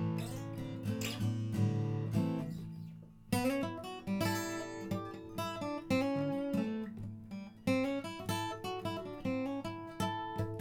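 Martin 000-18 mahogany-bodied acoustic guitar played by hand, picked notes and chords ringing out. The playing fades briefly about three seconds in, then picks up again with a strong new phrase.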